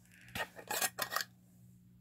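Metal screw lid being turned on a glass jelly-jar candle: a few short clicks and scrapes within the first second or so.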